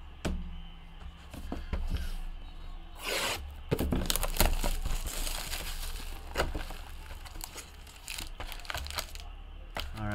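A trading-card hobby box being opened by hand: wrapping tearing and crinkling, foil-wrapped card packs rustling, and the cardboard box knocking, with a few scattered clicks at first and a dense stretch of crinkling and clicks from about three seconds in.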